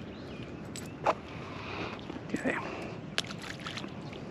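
A few light clicks and taps from a small fish being worked off a metal spoon lure by hand, over a steady low hiss of wind and water.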